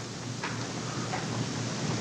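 A pause in speech filled by the steady hiss and room tone of an old recording, with a faint tick about half a second in.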